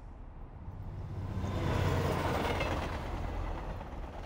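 Elevated metro train running along a steel viaduct, its rumble swelling to a peak about halfway through and easing off as it passes.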